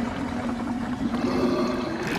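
Cartoon sound effect of a pool of glowing green liquid bubbling and gurgling, over a low steady hum.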